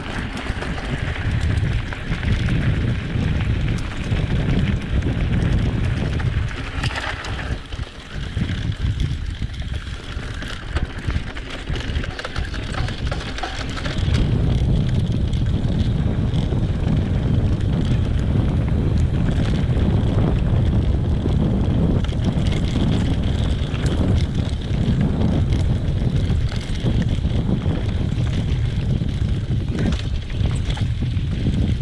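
Wind buffeting an action camera's microphone on a moving mountain bike, over the rolling noise of knobby tyres on gravel and dirt. The rumble gets louder about 14 seconds in and stays loud.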